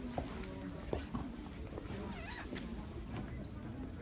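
Outdoor street ambience with distant voices, broken by a few sharp clicks and knocks in the first second or so, the loudest just after the start and about a second in.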